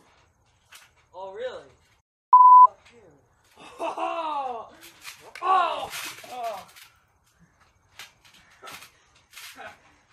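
Wordless shouts and groans from two teenage wrestlers grappling on a trampoline, with a short, loud one-pitch electronic beep about two and a half seconds in. In the last few seconds a run of light thumps and taps follows, bodies and feet on the trampoline mat.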